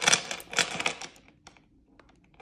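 Links of a heavy 14k gold Cuban link chain clicking and rattling against each other as the chain is handled, a quick dense run of small clicks that dies away a little over a second in.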